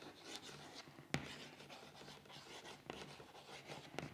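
Chalk writing on a chalkboard: faint scratching strokes, with a sharper tick about a second in.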